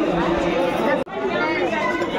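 People talking, with chatter in a busy public place. The sound drops out sharply for an instant about halfway through.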